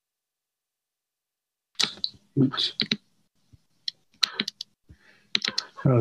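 Dead silence on an online-meeting audio line for almost two seconds as a participant's microphone comes on. Then there are short muffled voice sounds and a scatter of sharp clicks, with speech starting near the end.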